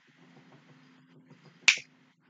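A single sharp click about a second and a half in.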